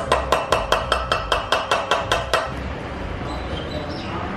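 Rapid light hammer blows, about five a second, ringing metallically on a driver that presses a crankshaft bearing into a Royal Enfield Bullet engine's crankcase half. The tapping stops about two and a half seconds in.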